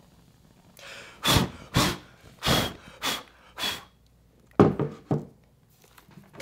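A person's breath in a series of short puffs, five in about two and a half seconds, followed by three softer ones near the end.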